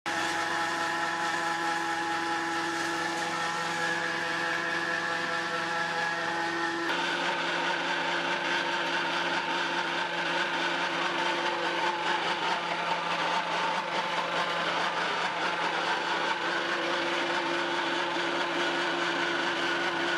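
Electric-motor-driven pellet feed mill running under load, pressing a rice-bran and wheat-bran mix into feed pellets: a steady mechanical hum and whine. The sound changes abruptly about seven seconds in, going from a clear set of steady tones to a rougher, noisier run.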